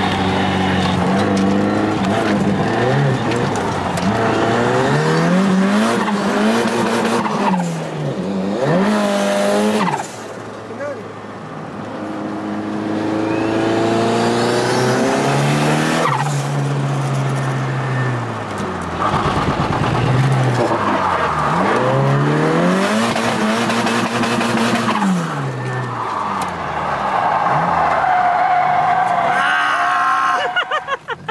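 Ford Sierra Cosworth's turbocharged 2.0-litre four-cylinder engine heard from inside the cabin, revving up and down over and over as the car is drifted, with tyres squealing. The engine eases off briefly about a third of the way through, then climbs again.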